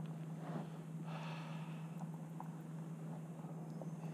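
Quiet stretch under a steady low hum, with a short breath through the nose about a second in and a few faint ticks of handling.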